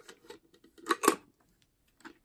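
Plastic lid of a Watson 35mm bulk film loader being fitted over the film chamber by hand: faint rubbing and small clicks, with two sharper clicks about a second in.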